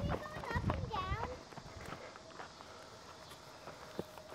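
Running footsteps thudding on a dirt trail, with short vocal sounds over them, for about the first second and a half; then the running stops and it goes quieter, leaving a few faint ticks and a faint steady tone.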